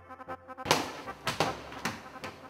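Light background music of evenly paced plucked notes, broken by three loud thumps a little over half a second apart as the juggling balls drop to the floor.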